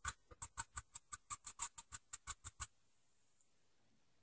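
Faint, quick, evenly spaced taps, about six a second, of a sea sponge being dabbed against the painting to lay down grass strands, stopping a little before three seconds in.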